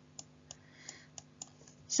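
Faint, light clicks of a stylus tapping and drawing on a digital writing surface while handwriting is added, about six small clicks over two seconds, with a faint scratch in the middle.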